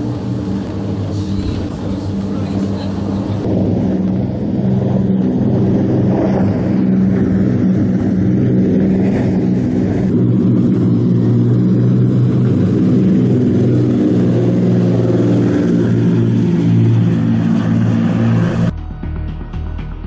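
Engines of the 23 m XSV20 powerboat running flat out at planing speed, a loud steady drone heard from on board. The drone gets louder about four seconds in and cuts off suddenly near the end.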